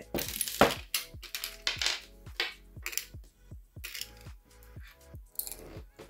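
Small plastic beads and acrylic gems clicking and clinking against a glass jar and a small metal tin as they are shaken out and sorted by hand: many quick, irregular clicks. Soft background music with held tones runs underneath.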